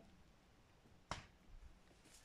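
Near silence, broken by a single short click about a second in.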